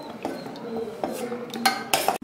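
Metal spoon clinking against the side of a stainless steel pot as it moves jamun balls through the syrup: a few sharp clinks, two close together near the end.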